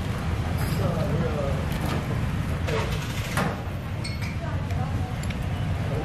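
Voices talking in the background over a steady low rumble, with a few light clicks about three seconds in.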